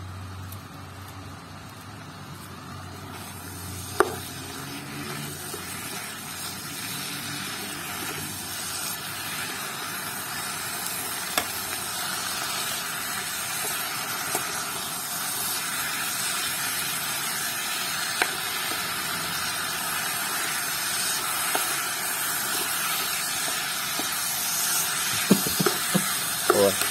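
Beef frying in an electric pot: a steady sizzle that slowly grows louder, with a few sharp clicks of a plastic spoon against the pot and a cluster of them near the end as it is stirred.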